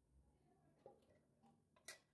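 Near silence broken by a few faint clicks and light taps, the sharpest near the end, from objects being handled on a hard work surface.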